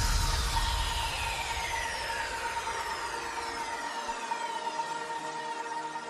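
Electronic background music fading in a long, falling synth sweep over a held tone: a transition between tracks.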